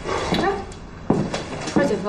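Three short vocal sounds from a man, each under half a second, not clear words.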